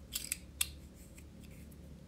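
Hobby cutter blade scraping and nicking at hardened super glue on a balsa-and-foam model-plane nose block: three short, crisp scrapes within the first second.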